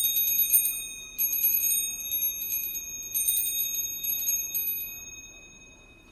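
Small high-pitched hand bell rung in three spells of quick repeated strokes, about a second apart, then ringing on and fading away, signalling the start of the prayer service.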